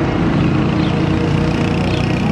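Steady rumble of a motor vehicle engine running close by, as from road traffic, with a few faint high chirps over it.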